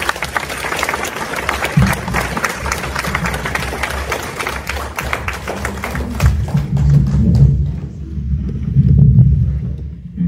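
Audience applauding, dense clapping that thins out and stops about eight seconds in. A loud low rumble swells twice under and after it near the end.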